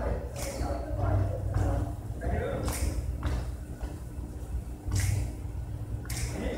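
Indistinct voices echoing in a large hall, over repeated low thuds.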